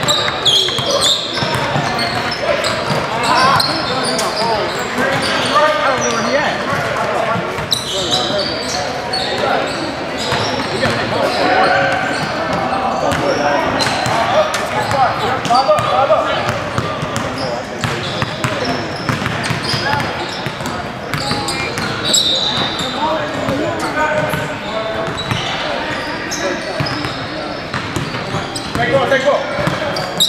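Indoor basketball game on a hardwood court: a ball bouncing and players' voices and calls, echoing in a large gym hall.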